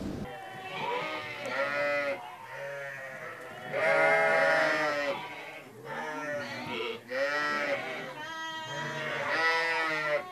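A flock of sheep and lambs bleating, many calls overlapping one another, the loudest about four seconds in.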